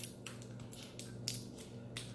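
A few short scrapes and clicks of fingers handling a small metal tin of beard balm, about a quarter second, a second and a quarter, and two seconds in, over a faint steady hum.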